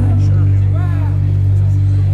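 Live rock band holding a steady low bass note between sung lines, loud and unchanging until the music moves on just after. A faint voice calls out briefly about a second in.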